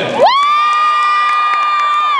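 One person's long, high-pitched cheering scream: the voice slides up, holds a single note for nearly two seconds, then starts to slide down at the end.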